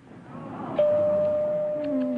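A single steady signal tone, one clean pitch with no warble, starts just under a second in and holds unchanged.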